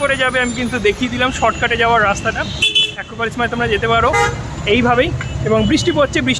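Mostly close talking over road traffic, with a short car horn toot about three seconds in.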